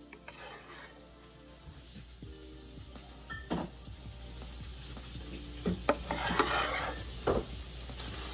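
A wooden spoon knocking and scraping against mussel shells and the baking dish as a butter sauce is spooned over them: a few sharp knocks in the second half, with a spell of scraping between them, under soft background music.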